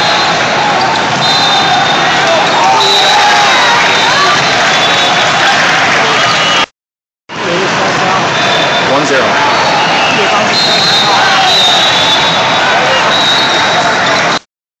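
Echoing indoor sports-hall din: many voices calling and chattering from play on many volleyball courts, with ball hits and short high squeaks scattered through it. The sound cuts out completely for about half a second midway.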